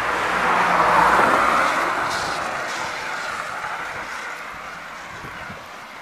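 A car passing by: tyre and engine noise swells to a peak about a second in, then fades away over the next few seconds.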